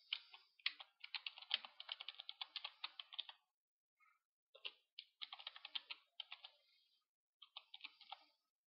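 Faint typing on a computer keyboard: a fast run of key clicks, a pause of about a second, then further bursts of keystrokes.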